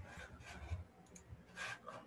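A few faint clicks and soft rustling noises picked up by a computer microphone on a video call, with quiet room noise between them.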